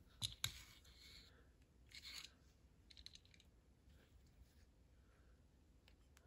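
Faint handling noises of small diecast model vehicles: two sharp little clicks near the start as the car is set onto the toy flatbed's bed, then a few soft scrapes and rustles.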